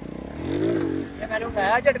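Honda CD70's small single-cylinder four-stroke engine revved once, rising and falling in pitch, about half a second in. A man's voice follows near the end.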